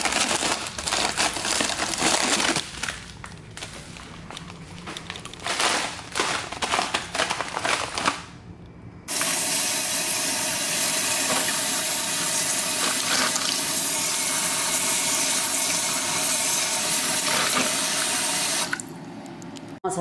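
Plastic packaging rustling and knocking as a bag of frozen shrimp is handled. About nine seconds in, a kitchen faucet starts running steadily into a plastic bowl of shrimp in the sink, rinsing them, and stops near the end.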